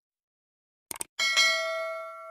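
Two quick clicks about a second in, then a bright bell chime sound effect that is struck, rings with a second strike just after, and slowly fades away.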